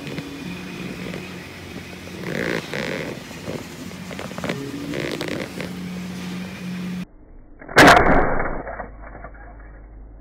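Flexible, rubbery 3D-printed toy being squashed and handled: a string of low buzzing squeaks. Then, about eight seconds in, a single loud thump that fades away.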